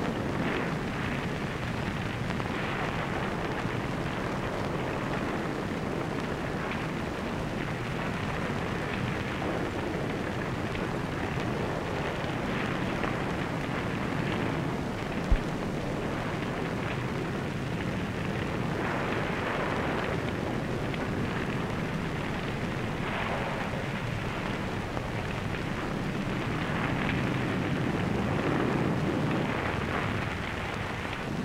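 Steady crackling noise with one sharp pop about halfway through.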